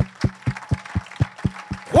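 Fast, even drum beat of short low thumps, about eight a second, over a faint steady hum, during congregational acclamation in worship. A man's shout breaks in at the very end.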